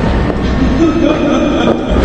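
A woman laughing maniacally over a low, rumbling sinister music score from a drama soundtrack.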